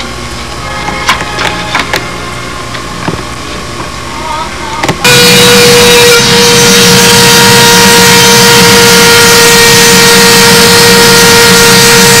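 Light handling knocks, then about five seconds in a Dremel rotary tool on a flexible shaft starts up suddenly. It runs loud and steady at one high, even pitch while grinding the edge of a fibreglass model-airplane cowling.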